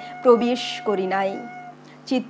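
A woman speaking in Bengali in short, expressive phrases, with a faint steady tone beneath.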